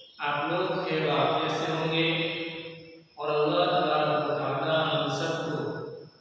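A man's voice reciting Arabic in a drawn-out, sung chant: two long held phrases of about three seconds each with a brief pause between them.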